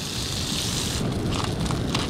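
Crumbed flathead fillets sizzling in oil in a frying pan, over a steady low rumble. A few light clicks come in the second half.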